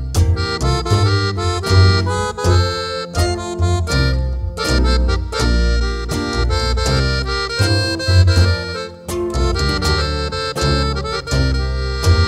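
Instrumental interlude by a norteño-style band: a button accordion plays the melody in quick runs of notes over rhythmic low bass notes and string accompaniment.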